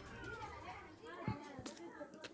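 Faint background voices with speech-like chatter, and a few sharp keyboard clicks in the second half.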